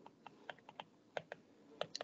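Stylus tip tapping and clicking on a tablet's glass screen while handwriting, a series of about nine faint, irregular clicks.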